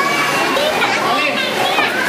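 A crowd of children's voices chattering and calling out at once, a steady overlapping babble of high voices with no pause.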